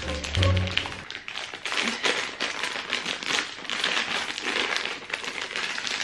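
Background music with a low bass line stops about a second in. Close handling noise follows: quick taps, clicks and rustling as someone works at a packet of carrots, trying to open it.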